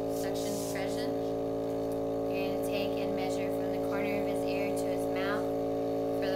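Portable suction unit's motor running with a steady, even hum, switched on for a suction check. Voices talk over it at intervals.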